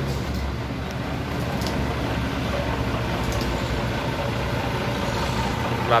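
Mitsubishi Fuso FM215H truck's 6D14 inline-six diesel idling steadily.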